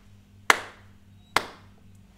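Hand claps keeping a steady beat of crotchet 'ta' rhythms: two sharp claps a little under a second apart.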